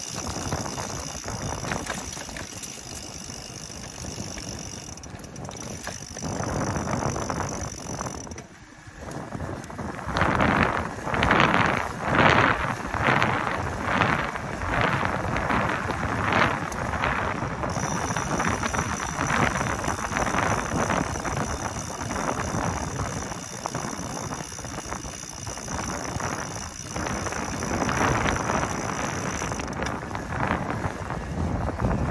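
A 2020 Specialized Turbo Vado e-bike being ridden: tyres rolling on pavement and wind on the microphone, with mechanical clicking from the bike. Several seconds in, the noise swells into a pulsing rhythm of about one and a half beats a second for several seconds, then settles back.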